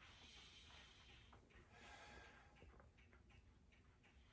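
Near silence: faint room tone with soft, slow breathing from a person lying at rest.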